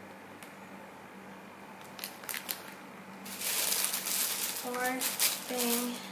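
Clear plastic bag crinkling as a bagged toy is handled, with a few light clicks first and a dense rustle through the second half.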